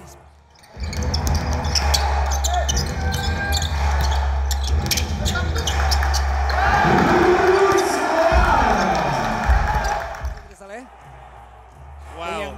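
Basketball bouncing on a hardwood court amid game noise and shouting voices, over a steady deep rumble. The sound starts just under a second in and drops away about ten seconds in.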